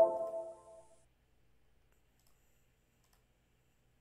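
A short electronic chime whose notes step down in pitch, ringing out and fading within the first second, followed by near silence.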